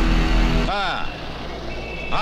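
Dramatic film background score with a deep rumble and held tones, cut off abruptly less than a second in. After the cut come short bits of a man's voice.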